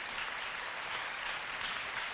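Audience applauding steadily, just after the last sung chord has died away.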